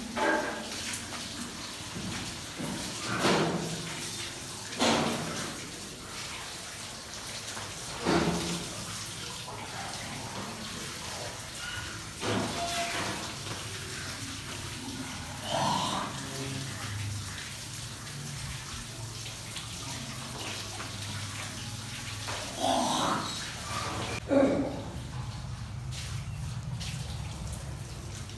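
Water running from a row of wall taps as several people wash for ablution (wudu), with a steady splashing and rushing and several short louder bursts of splashing or voices.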